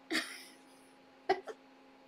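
A woman's short breathy huff through the mouth, then a clipped word, over a faint steady hum.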